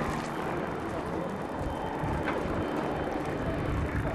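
Outdoor street ambience: a steady, uneven rumbling noise with no clear voices, and one faint short sound about two seconds in.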